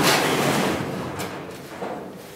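Metal up-and-over garage door swinging open: a long rushing, rumbling scrape that peaks at the start and slowly dies away, with a couple of light knocks near the end.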